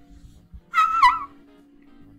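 A short, high-pitched squealing laugh from a person, about a second in, with a wavering pitch, over faint background music.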